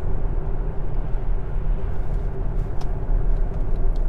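Steady road and tyre rumble heard inside the cabin of a Tesla Model S driving at about 70 km/h, with no engine note.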